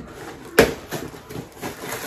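Packaging being handled while a shipping box is unpacked: one sharp tap or knock about half a second in, then fainter clicks and rustling.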